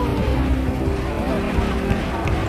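Background music with sustained notes over a heavy bass.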